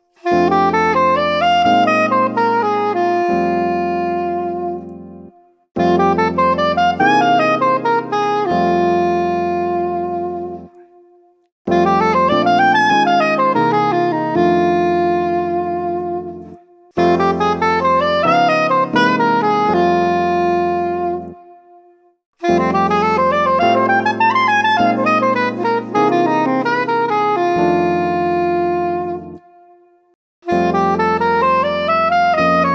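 Soprano saxophone playing jazz scale exercises, major pentatonic and major blues scale patterns, over sustained backing chords. It plays five phrases of about five seconds each, every run climbing and then coming back down, with short breaks between phrases.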